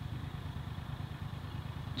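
Faint, steady low rumble of a utility vehicle's engine idling in the background.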